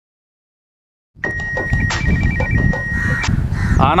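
After about a second of silence, a phone rings: a steady high electronic tone with a short warbling trill, lasting about two seconds, over outdoor background noise. A crow caws near the end.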